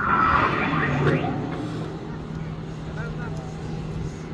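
Life-size moving Gundam statue venting steam in a loud hiss that starts suddenly and lasts about a second. A steady low hum follows and continues, with people talking.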